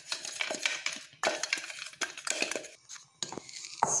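Wooden spatula knocking and scraping against a steel mixer-grinder jar and a glass bowl as crushed biscuit powder is emptied out and stirred: an irregular run of sharp taps and scrapes.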